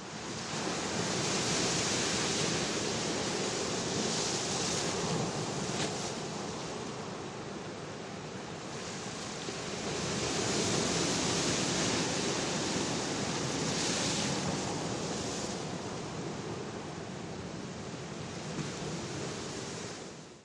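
Ocean surf: a steady rush of waves washing on a shore, swelling and easing slowly over several seconds.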